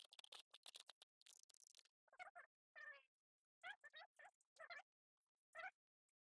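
Near silence, with a few faint clicks in the first second and then about five faint short pitched sounds, each under half a second long.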